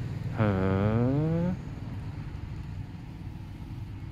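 A man's drawn-out 'heee' of interest, its pitch dipping and then rising, lasting about a second. After it comes a steady low rumble of outdoor background noise.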